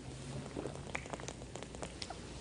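Faint sounds of a man drinking from a plastic water bottle close to a headset microphone: a run of small clicks, sips and swallows over a low hum.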